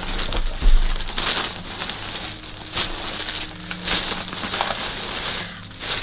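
Rustling and crinkling of packaging as a Puma shoebox is opened and its contents unwrapped, with a low thump about half a second in.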